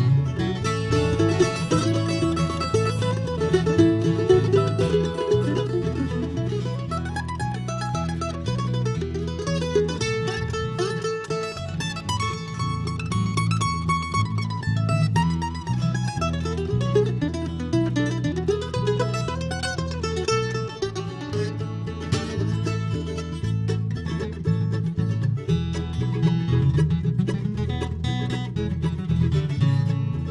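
Instrumental break of a bluegrass gospel song: a mandolin picks the lead melody over strummed acoustic guitar and a steady, pulsing electric bass line.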